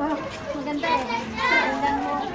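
Voices with no clear words, including high-pitched children's voices calling out, loudest about one second in and again a little later.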